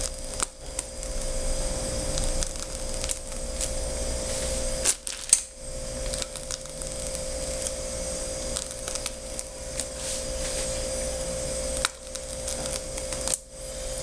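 A steady machine hum with a faint hiss, cutting out briefly about five seconds in and twice near the end.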